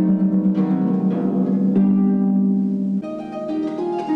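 Solo concert harp playing: plucked notes ringing over a repeated low note, which gives way about three seconds in to a quieter passage of higher notes.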